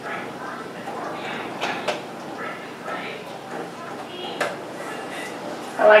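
A spoon knocks and clinks against glass canning jars and a funnel as thick pumpkin butter is spooned in: a couple of sharp knocks a little under two seconds in and another past four seconds, over a faint murmur of talk.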